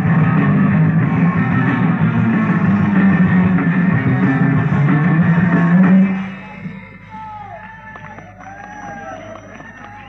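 A live rock band (guitar, bass, drums) plays loudly, recorded lo-fi on a mono cassette recorder's built-in microphone, with a heavy low hum running under it. About six seconds in, the music stops abruptly, leaving quieter crowd noise with cheering and whistles.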